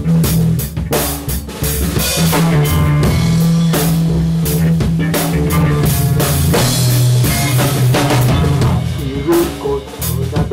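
Live rock trio playing an instrumental passage: electric guitar, electric bass and drum kit, with steady drum strokes over long held bass notes.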